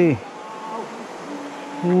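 A man's voice: the end of a spoken word, then near the end a long, held exclamation, "ooh", which is the loudest sound. Under it runs a steady low rush of river water.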